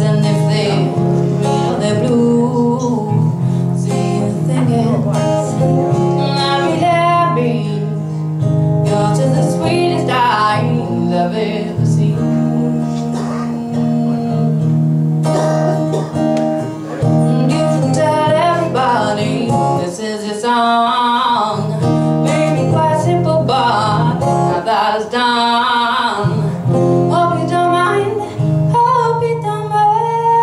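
A woman singing to her own strummed acoustic guitar.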